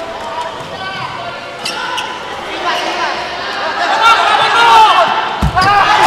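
Volleyball bounced on a hard court floor a few times in a large hall with crowd noise. A hard thump from the ball comes near the end.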